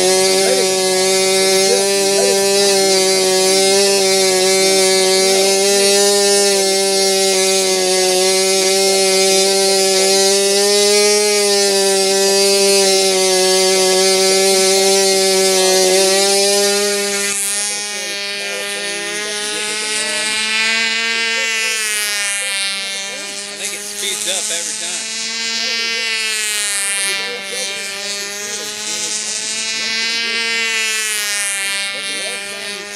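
Control-line model airplane engine running at a steady high pitch. About 17 seconds in the sound drops a little, and the pitch begins to rise and fall in slow repeating swells as the plane flies laps around the circle.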